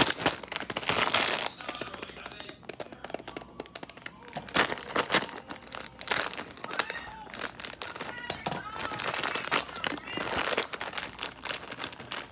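A plastic bag of frozen fruit being handled, shaken and squeezed: irregular crinkling and crackling of the plastic, with louder bursts about a second in, near five seconds and around ten seconds.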